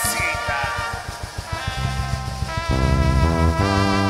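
Live band music with bass guitar, keyboard and drum kit: held chords that change every second or so over a steady run of drum strokes.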